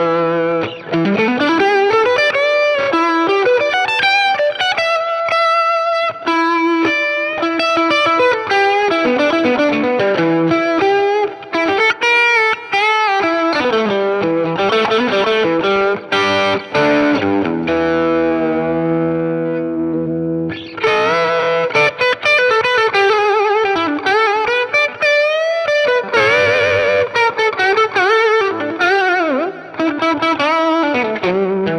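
Fender Custom Shop 1968 Heavy Relic Stratocaster with Custom Shop '69 pickups, played through a Boss DS-1 distortion and DD-7 digital delay into a Fender '65 Deluxe Reverb reissue amp. It plays distorted single-note lead lines with string bends and vibrato. Past the middle, sustained notes ring for a few seconds, then the lead phrases start again.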